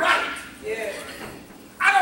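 A man preaching into a microphone in short, loud phrases, with a brief pause before a loud new phrase near the end.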